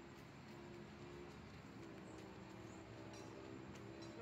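Near silence: faint outdoor background with a low steady hum and a few faint ticks.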